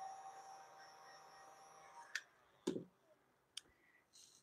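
A quiet room with faint steady tones that fade out about halfway through, then a few small sharp clicks and one soft knock.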